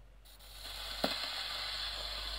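Needle of an HMV 102 wind-up gramophone's soundbox set down on a spinning 78 rpm shellac record. The steady hiss of surface noise from the lead-in groove starts a quarter-second in, with one sharp click about a second in.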